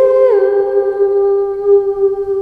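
A woman's voice holding one long sung note, stepping briefly up a tone at the start and then settling back on the held pitch.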